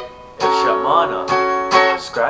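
Telecaster-style electric guitar strumming a B chord slowly: the previous chord dies away, then fresh strums come about half a second in, just past a second and near the end, with a short wavering figure between them.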